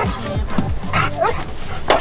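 A dog giving a few short, rising yelps about a second in, over background music in the first half. A sharp knock comes just before the end.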